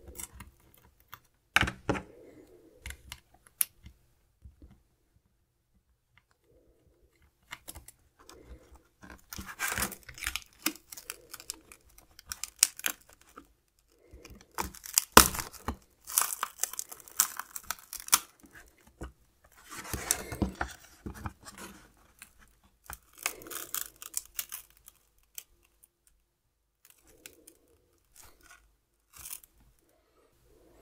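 The metal cover of a Kindle Oasis 2's electronics box being pried and wrenched off by hand, its glued-in bushing ripped out of the plastic liner by brute force. It comes as irregular bursts of scraping, cracking and tearing with pauses between them, loudest about halfway through.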